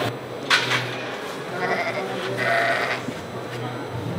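Sheep bleating a couple of times in the show pens, after one sharp knock about half a second in, over a steady low hum of the hall.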